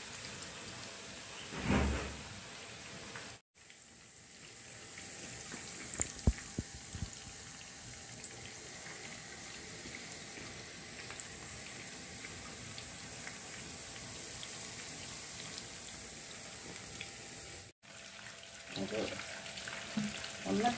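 Chicken pieces deep-frying in hot oil in a pan: a steady bubbling sizzle, with a few sharp pops about six to seven seconds in. The sound cuts out for an instant twice.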